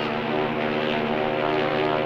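A steady, low, buzzy drone held on one pitch without a break.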